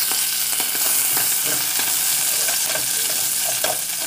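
Cubes of desalted carne seca (dried salted beef) sizzling steadily as they fry in a little oil in a pot, with faint scattered clicks from a silicone spatula stirring them.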